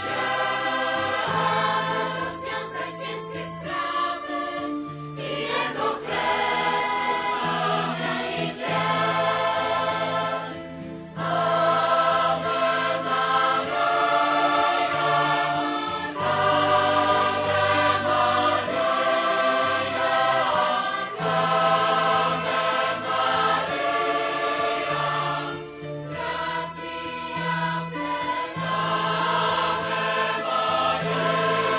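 Background choral music: a choir singing long held notes over a sustained low bass line.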